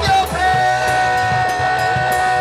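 Live punk rock band playing loud: electric guitar and bass over a steadily hit drum kit, with one long held note starting about half a second in.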